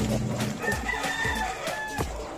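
A rooster crowing once, one drawn-out call of about a second starting a little way in.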